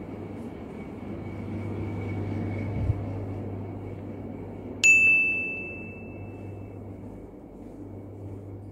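A single bright ding about five seconds in, ringing out for about two seconds, over a steady low hum and a faint steady high whine.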